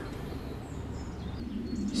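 Steady low background hum with a few faint, high bird chirps about a second in.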